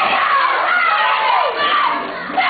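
Audience cheering and shouting, many voices at once, with one voice sliding down in pitch near the end.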